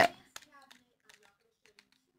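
Faint handling of small cosmetic packaging being worked open by hand: a few quiet clicks and rustles, spaced well apart.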